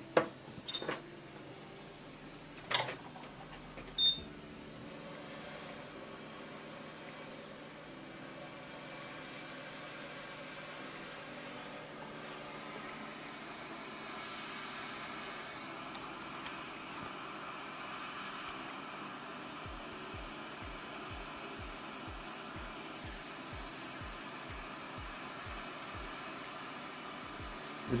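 A short beep a few seconds in, then a hot-air rework station blowing steadily on a phone logic board, heating the capacitor that runs hot under power in order to lift it off.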